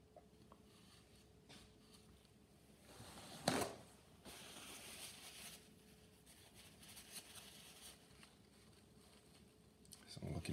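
Faint brush strokes on watercolour paper, with one sharp tap about three and a half seconds in and soft brushing or rubbing just after it.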